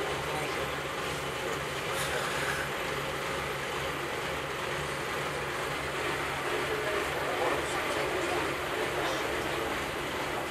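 Vintage single-decker bus's diesel engine running steadily with a low hum, heard from inside the passenger saloon, with passengers talking faintly behind it.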